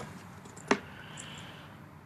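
A single sharp click about two-thirds of a second in, over faint room tone.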